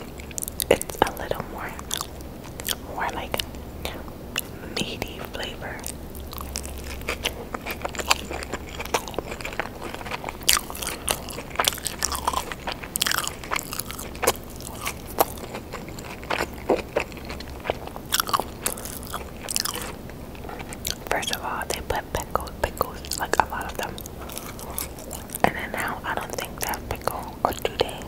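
A person chewing and biting a cheeseburger and fries close to the microphone: continuous wet, sticky mouth sounds with many irregular clicks and soft crunches.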